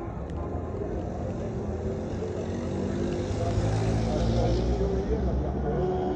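Busy city street: a motor vehicle's engine running and passing by, growing louder in the middle and easing off near the end, over the chatter of passers-by.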